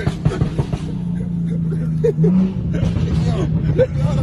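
Turbocharged high-horsepower car's engine heard from inside the cabin, pulling hard with a dense low rumble, then settling into a steady drone that rises briefly in pitch about two seconds in.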